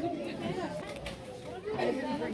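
Indistinct chatter of several people's voices, softer than the speech just before.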